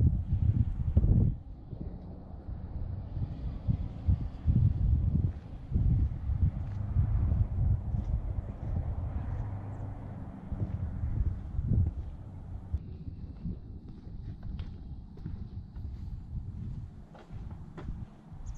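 Wind buffeting the camera microphone in uneven gusts, with footsteps on the concrete.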